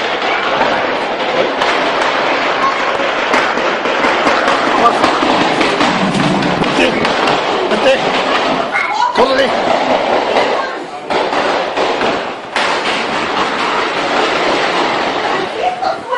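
Gunfire in rapid bursts, many shots in quick succession, with people's voices over it. The firing breaks off briefly twice about two-thirds of the way in.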